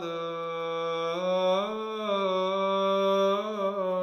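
A single voice chanting Orthodox liturgical chant, holding one long melismatic vowel with the pitch stepping slowly up and down at the close of a verse.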